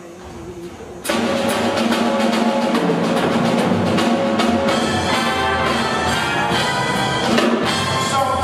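A jazz big band kicks in about a second in, loud and full: drum kit and cymbals keeping a steady beat under the brass and saxophone sections, with double bass and piano.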